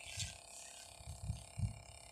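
A few soft, low thumps over a faint hiss, quiet overall: bumps on the microphone from handling or wind.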